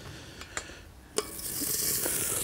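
Butter hitting an overheated pan: a click about a second in, then sizzling that swells into a strong hiss. The pan is hot enough to burn the butter and set it smoking.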